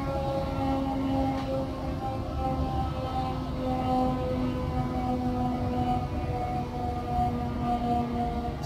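Town curfew siren sounding one long, steady tone that wavers slightly, over a low rumble, signalling the 10 p.m. curfew for minors.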